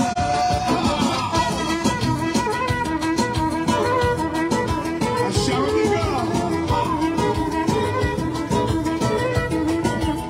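A live band plays an instrumental manele piece. A trumpet carries the melody in held notes over an acoustic-electric guitar, and a large double-headed drum keeps a steady, driving beat.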